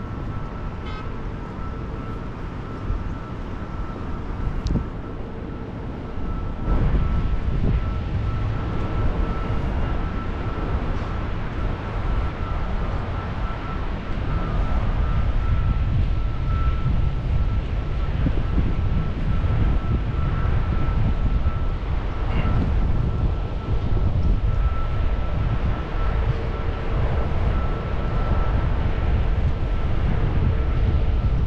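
Wind rumbling on the microphone of a camera carried on a walk, growing louder about seven seconds in, with a faint steady high tone underneath.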